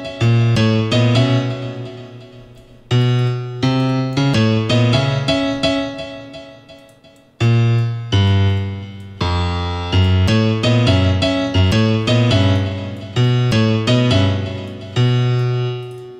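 FL Studio's FL Keys software piano playing a melody in stacked chords: a run of short struck notes, with a couple of notes left to ring out and fade over about three seconds each.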